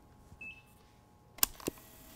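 Two sharp clicks about a quarter second apart, the buttons of a portable cassette player being pressed to start the tape. A short high beep comes about half a second before them.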